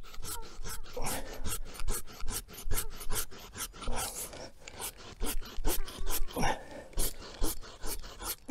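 Hand pruning saw cutting through a hazel stem low at its base, in quick back-and-forth rasping strokes, about three or four a second.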